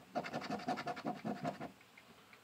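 Scratch-off lottery ticket being scratched in quick short strokes, about ten a second, scraping the coating off a number spot; the scratching stops shortly before the end.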